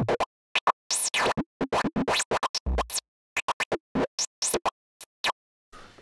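Synthesized noise lead with a resonant filter and drive, playing a stuttering run of short gated bursts of uneven length and spacing, its note lengths set at random by probability gates, some bursts with a filter sweep. A single low thump sounds a little before the middle.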